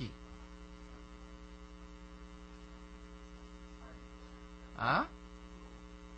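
Steady electrical mains hum, a low buzz with its overtones, through a pause in the talk; one short spoken syllable cuts in about five seconds in.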